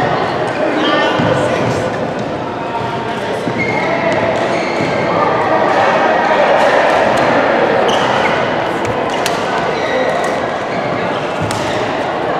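Reverberant badminton hall: a steady babble of many overlapping voices from around the courts, with several sharp clicks of rackets striking a shuttlecock during a rally.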